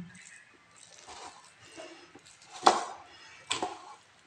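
Cooked rice being stirred with a rice paddle in a rice cooker's metal inner pot: soft squishing and scraping, with two sharp knocks near the end, the first the louder.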